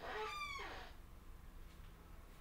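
A single short animal call lasting under a second near the start, its pitch falling slightly.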